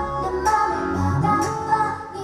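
Upbeat K-pop dance track with female vocals over a drum beat, with a rising slide in the low end about a second in.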